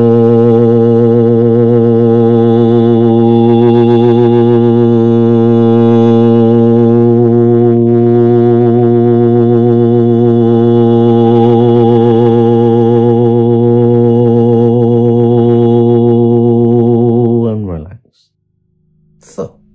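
A man's voice intoning the seed syllable "Tho" as a single long, low held note, sustained in one breath with a slight waver and tailing off just before the end.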